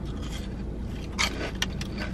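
Close-up crunchy chewing of a crispy fried rolled chicken taco, with a few sharp crunches about a second in, over a steady low hum in a car cabin.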